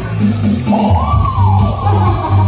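Live pop ballad performance: a woman singing into a handheld microphone over keyboard backing with a steady low bass beat, holding one long note that rises and falls in the middle.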